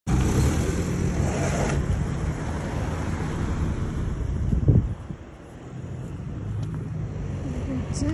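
Street noise of a passing car and road traffic, with wind rumbling on the phone microphone. It is loudest for about the first five seconds, then drops and slowly builds again.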